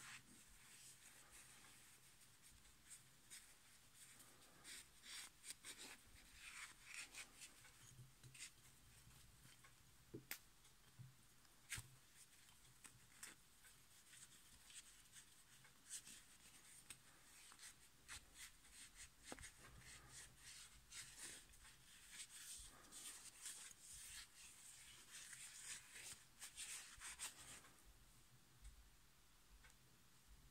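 Faint rubbing of a cloth rag wiping the removed handwheel of a Necchi Supernova sewing machine clean, in irregular strokes with a few light clicks.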